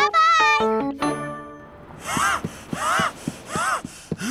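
A short bright musical phrase dies away, then a cartoon character huffs and grunts breathlessly in quick repeated bursts while running.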